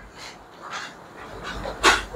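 A person breathing audibly during a pause: a few soft breaths, with a sharper, louder breath near the end.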